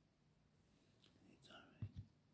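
Faint whispering, then two low thumps close together near the end, the first one the louder.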